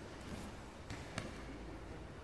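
Two sharp slaps or thumps on a grappling mat close together about a second in, the second one louder, over a steady low rumble.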